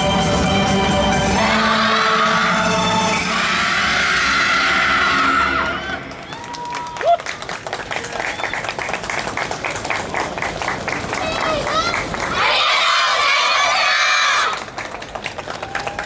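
Yosakoi dance music ends about a second in, and a troupe of child dancers lets out loud group shouts, a long one early and a second near the end, over the murmur of an outdoor crowd.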